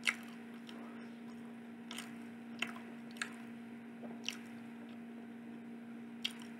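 Close-miked wet mouth sounds of someone chewing food: a few short smacks and clicks, the loudest right at the start, over a steady low electrical hum.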